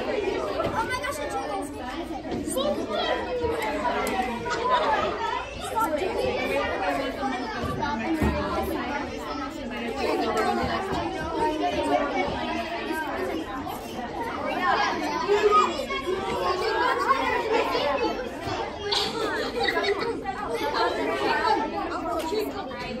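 A roomful of children chattering, many voices talking over one another at once in a steady babble.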